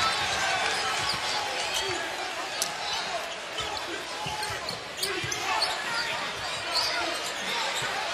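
Arena crowd murmuring while a basketball is dribbled on a hardwood court, with repeated bounces and short sneaker squeaks from the players.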